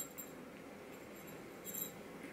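Faint room tone with two brief, faint metallic clinks, one at the start and one near the end, from a bangle and ring on a moving hand.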